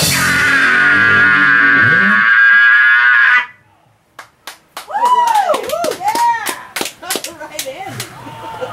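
A heavy metal band's song ending on a long held final note with the vocalist's sustained harsh scream over distorted guitars, cutting off abruptly about three and a half seconds in. After a short near-silent gap come voices and scattered clicks.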